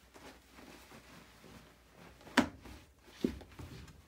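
Clothes being handled and pushed into a plastic tub: faint fabric rustling, with a sharp knock a little over two seconds in and a lighter one about a second later.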